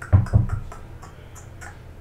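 Two short, low vocal sounds from a man in quick succession near the start, like a brief 'hm-hm', then faint scattered clicks.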